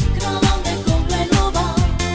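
Myanmar dance-pop song: a singing voice over a steady electronic kick drum beating about twice a second, with synths and bass.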